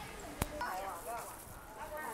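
Faint voices of people nearby talking, with a single sharp click about half a second in.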